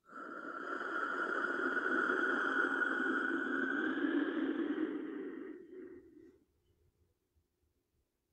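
Clay wind whistle blown in one long out-breath, a breathy, wind-like rush that holds steady and then fades out about six seconds in.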